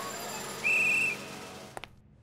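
One short, steady, high whistle blast lasting about half a second, over the fading tail of background music.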